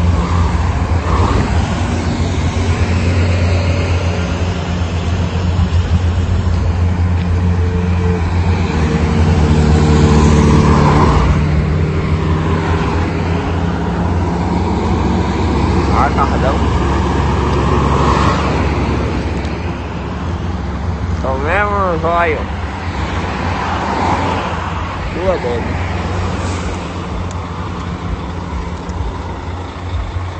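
Road traffic of cars and diesel semi-trucks passing close by, engines running with a steady deep rumble that swells as a vehicle goes past about a third of the way in. Brief wavering high-pitched sounds cut through a little past the middle.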